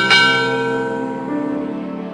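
A bell sound effect, struck just before and ringing on, fading slowly over about two seconds, over soft background music.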